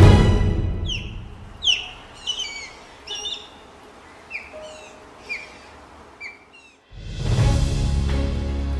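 Osprey calling: a string of about ten short, high, downward-slurred whistles, roughly one a second. Background music fades out at the start and swells back in near the end.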